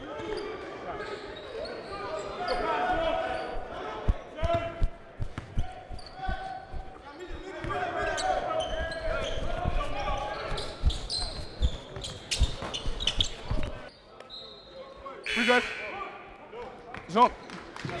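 A basketball being dribbled on a hardwood gym floor in live play, a run of short thumps through the middle, with voices echoing around the gym.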